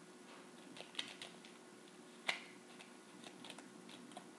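A tarot deck being shuffled in the hands: faint, irregular soft clicks of cards slipping against each other, with a sharper snap a little past two seconds in.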